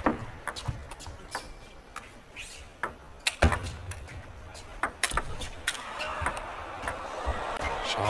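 Table tennis rally: the ball is struck back and forth with sharp clicks off the rackets and the table, coming irregularly about every half second to a second.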